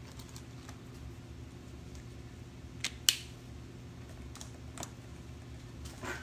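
A few scattered light clicks and taps from small objects being handled on a table, the sharpest a pair of clicks about three seconds in, over a steady low electrical hum.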